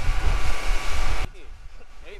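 Wind buffeting the microphone over the running engine of a small motorboat under way, a loud rushing noise with a deep rumble. It cuts off suddenly a little over a second in, leaving only faint sounds.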